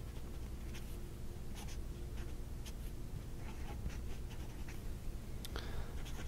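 Stainless steel medium nib of a Lamy AL-Star fountain pen faintly scratching across notepad paper in short, irregular strokes as words are handwritten.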